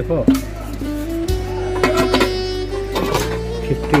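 Background music with long held notes over a steady bass line.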